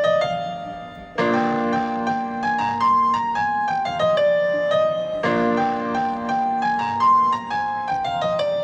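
Electronic keyboard played with a piano sound: a slow single-note melody, with held chords coming in beneath it about a second in and again about five seconds in.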